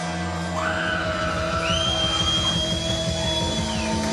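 Live rock band playing without vocals, drums and bass under a lead line that slides up to high, long-held notes and drops away near the end.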